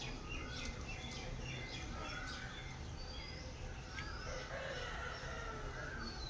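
Small birds chirping over and over at low level, with a few short clicks among them.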